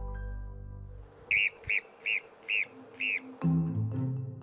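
Golden marmot giving five short, sharp alarm calls, about one every 0.4 seconds. Music fades out before them and comes back in near the end.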